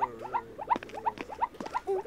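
Squeaky, high-pitched cartoon monster chatter: a rapid string of short chirping squeaks, about five or six a second, some sliding down in pitch.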